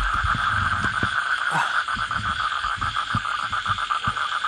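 A chorus of frogs calling steadily in a rapid pulsing trill, with a few soft low thumps underneath.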